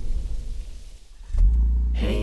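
A Volvo's engine started by push button: a click about one and a half seconds in, then a steady low rumble as it catches and runs.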